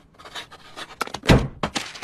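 Short scratchy pencil strokes on paper, then a single heavy thump about a second and a quarter in.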